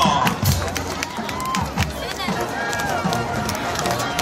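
Stadium crowd at a high school football game: overlapping voices and shouts of spectators in the bleachers, with scattered sharp clicks.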